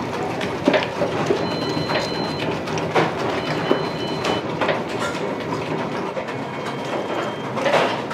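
Breaded bread rolls deep-frying in hot oil: a steady dense sizzle and crackle with scattered sharper pops, and a louder knock near the end.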